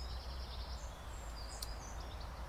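Quiet garden ambience: faint birdsong of high, thin notes over a steady low rumble, with one short click about one and a half seconds in.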